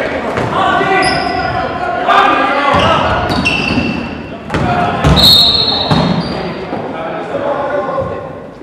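Basketball game sounds in a gymnasium: a ball dribbled on the hardwood floor with sharp knocks, voices calling out over the play, and a few short high sneaker squeaks, all echoing in the large hall.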